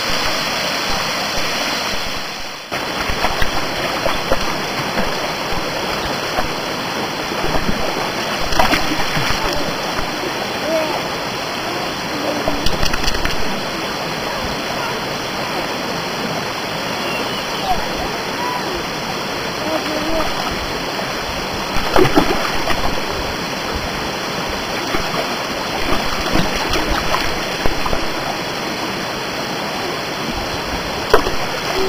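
Steady rushing of a rocky mountain stream and its small cascades, with a few sharp splashes of stones thrown into the water scattered through.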